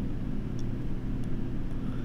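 Steady low background hum with a faint, even hiss, and a few very faint clicks.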